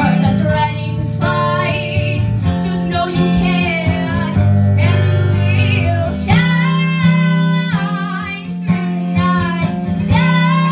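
A girl singing a pop melody live over acoustic guitar accompaniment, holding long notes with vibrato in the second half.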